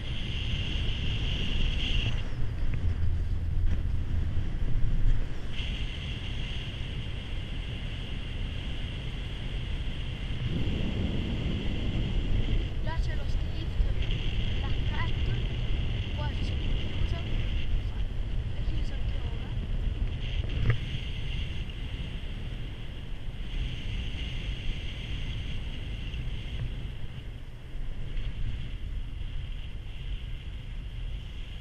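Wind buffeting the microphone and a steady low rumble while riding a four-seat Poma chairlift uphill. A steady high whine drops in and out. There is a swell about ten seconds in and a single knock about twenty seconds in.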